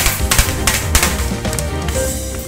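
Music with a drum kit: a quick run of sharp drum and cymbal hits over sustained low bass notes.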